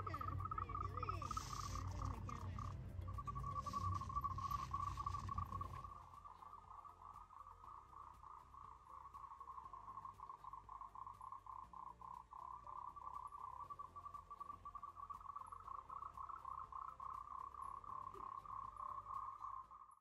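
Frogs calling at night in a steady, pulsing chorus. A low rumble underneath stops about six seconds in.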